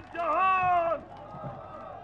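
A man speaking into microphones at a public address, drawing out one word for about a second, then a short pause with only faint background noise.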